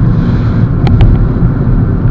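Road and tyre noise inside the cabin of a moving VW Jetta: a steady low rumble coming up through the floor, with a couple of faint clicks about a second in. The driver puts the level of road noise down to too little soundproofing in the floor pan.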